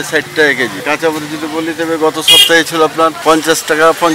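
A man talking in Bengali close to the microphone, with a brief, loud, hissing sound just past halfway.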